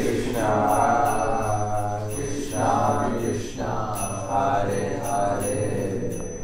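A man's voice chanting a devotional mantra in long held notes that bend in pitch, phrase by phrase, over a steady low hum.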